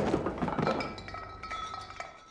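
A scatter of light clinks and knocks with a faint ringing tone, growing fainter.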